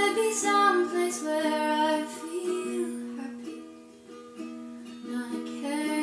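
A woman singing to her own ukulele in a small tiled bathroom. Her voice drops out for a couple of seconds in the middle, leaving the ukulele alone, then comes back in near the end.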